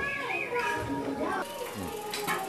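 High voices talking, their pitch rising and falling, with no words picked out, over a steady faint tone in the background.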